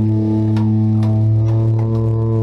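Music: one steady low droning note with its overtones, held throughout, with a few faint clicks over it.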